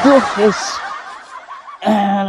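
A man's snickering laugh: a few short voiced bursts, then breathy wheezing, ending in a short steady held note.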